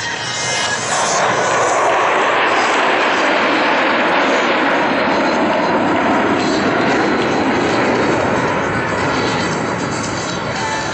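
Jet engines of a six-ship formation of F-16 Fighting Falcons passing overhead: a loud, steady rushing jet noise that swells in over the first couple of seconds and eases off near the end as the formation moves away.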